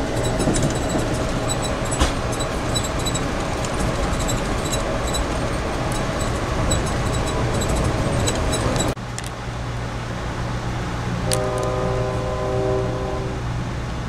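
Steady rumble of an Amtrak passenger train heard inside a coach at speed, with rapid ticking from the wheels and car. After a cut about nine seconds in the ride is quieter, and the train's horn sounds a chord for about two seconds near the end.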